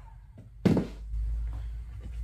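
A handheld heat gun set down on a wooden work surface with a single sharp thunk about half a second in, followed by a low steady rumble.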